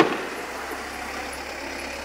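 Steady background noise over a low hum, with a brief sharp sound right at the start and no distinct bangs.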